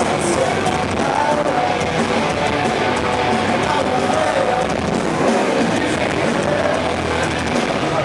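Loud live heavy rock band playing, heard from within a moshing crowd, with voices mixed in over the music.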